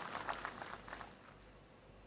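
Faint, scattered clapping from an audience in a large hall, thinning out and dying away about a second in, leaving near silence.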